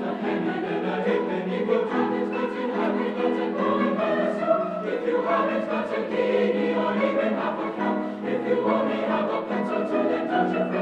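Mixed-voice high school choir singing a carol, many voices sustaining notes together without a break.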